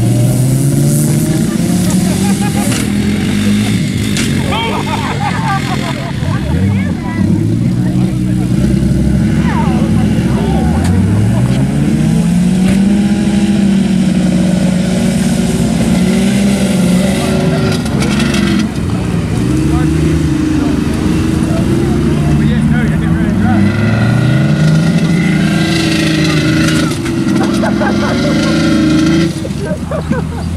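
Several car engines from demolition-derby sedans revving up and down over one another, their pitch rising and falling constantly as the cars drive and ram each other. Voices can be heard under the engines.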